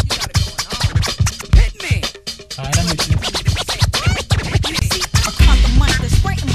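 Hip-hop music with turntable scratching: quick back-and-forth record scratches over a beat, with a bass line coming in partway through and getting heavier near the end.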